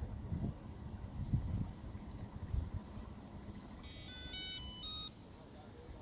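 A short electronic jingle of beeps stepping through several pitches, about four seconds in and lasting about a second, from the bait boat's autopilot system. Before it, a low gusty rumble on the microphone.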